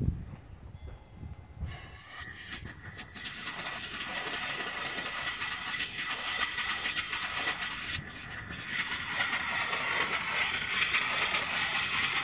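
A live-steam mill engine with a 3-inch bore, 4-inch stroke and flyball governor, fed from a small vertical boiler. Steam is let in about two seconds in and brings a steady hiss with a fast, regular beat as the engine runs. The sound grows gradually louder as the engine comes up to speed, and it runs smoothly.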